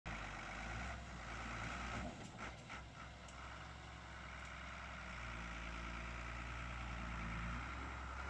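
Fire engine's diesel engine idling, a faint steady low hum, with a few light clicks about two to three seconds in.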